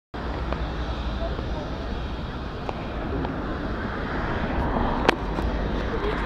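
Busy street ambience: a steady low rumble with indistinct voices of passers-by, and one sharp click about five seconds in.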